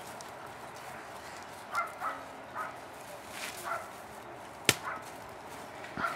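A stick striking a hanging piñata once, a single sharp crack a little over a second before the end. A few faint short calls, a dog's or children's, come earlier.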